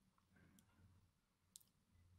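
Near silence: faint room tone in a lecture hall, with two brief faint clicks, one about half a second in and one about a second and a half in.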